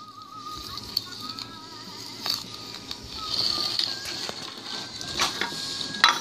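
A spoon stirring and scraping cookie crumbs in a porcelain bowl, with a few sharp clicks of the spoon against the bowl and a scraping stretch in the middle. A faint wavering tune plays in the background.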